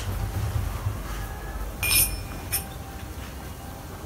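A short, bright clink about two seconds in, followed by a fainter one half a second later, over a low steady rumble.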